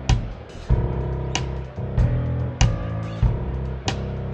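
A band plays an instrumental jam on drum kit, bass and keyboard. Over a steady bass line, a sharp drum hit lands about every second and a quarter.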